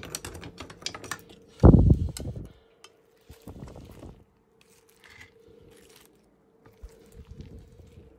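Light clicks and clatter of kitchen utensils and dishes over a faint steady hum, with a loud low rumbling noise, under a second long, about a second and a half in.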